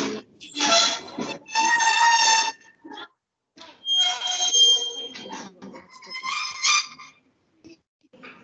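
Indistinct, unintelligible voices in four short stretches, with gaps between them.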